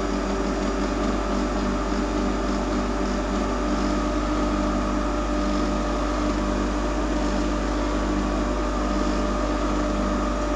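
Two centrifugal pumps on a Plint hydraulics test rig running together at 2500 rpm, set up in parallel: a steady machine hum with several fixed tones that does not change.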